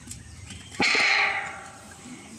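An aluminium basin handled by a monkey bangs once, sharply, about a second in, and rings briefly as it fades.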